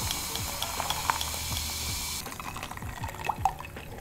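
Green liquid poured from a small bottle into a glass, the pouring stopping abruptly about two seconds in. A few small clicks follow, with a couple of louder ones near the end as the glass is lifted to drink.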